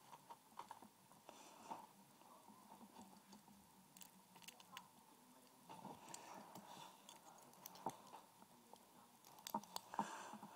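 Faint, irregular small metallic clicks and scrapes of a lock pick being worked in a lock, a little louder and closer together near the end.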